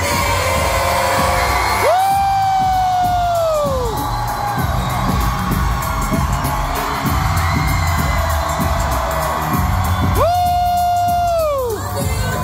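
Live pop music with singing over crowd noise. A high sung note is held twice for about two seconds, each time falling away at its end.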